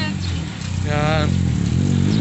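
A motor vehicle engine running close by on the street, its low pitch rising and falling as it passes.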